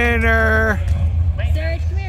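A person's voice calling out a drawn-out "winner", the pitch rising into a held vowel, then a short second call near the end, over a steady low rumble.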